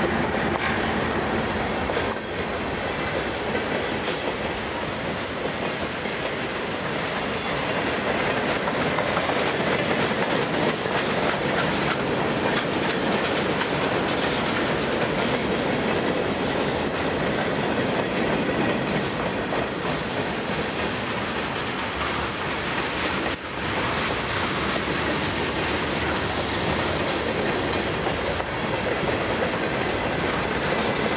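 Freight cars of a mixed freight train rolling past close by: steel wheels running over the rails in a steady noise that barely changes as car after car goes by.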